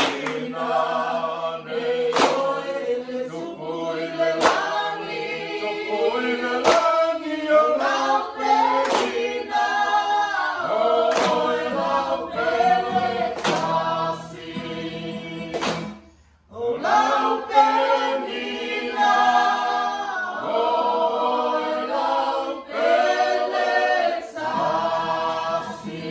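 A mixed group of men's and women's voices singing together unaccompanied, with a sharp clap about every two seconds marking the beat. The singing breaks off briefly about sixteen seconds in, then carries on.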